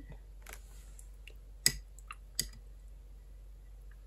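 A few light clicks and taps of a paintbrush against hard paint dishes while she changes colour, the sharpest about a second and a half in.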